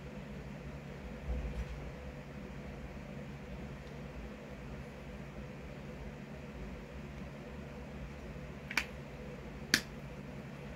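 A man drinking quietly from a plastic shaker bottle over a steady low room hum, with a soft bump about a second and a half in. Two sharp clicks come near the end, the second the louder.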